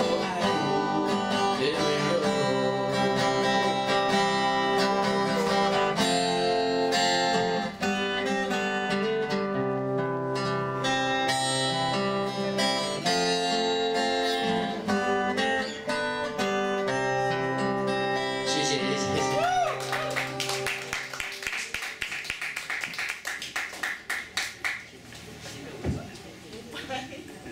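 Acoustic guitar playing the closing bars of a song, with ringing, sustained notes. About twenty seconds in the music ends and clapping follows, dying away toward the end.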